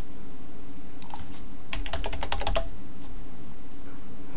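Typing on a computer keyboard: a few keystrokes about a second in, then a quick run of about ten keystrokes that stops about two and a half seconds in.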